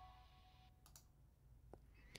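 Near silence: the last of a music playback dies away, then quiet room tone with a few faint clicks.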